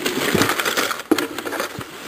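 A hand rummaging through a cardboard box of packaged fishing lures: plastic blister packs and card backings rustling and clattering against each other, with a few sharp clicks, the sharpest about a second in.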